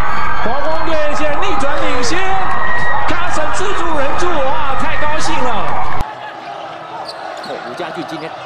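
Loud, excited shouting and cheering voices from a softball broadcast as a grand slam is celebrated. About six seconds in, a cut to much quieter basketball-arena sound with a ball bouncing.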